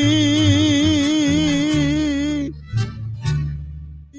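Mariachi ensemble ending a song: a long held final note with wide vibrato over walking bass notes, cut off about two and a half seconds in, then two short closing chords that ring out and fade.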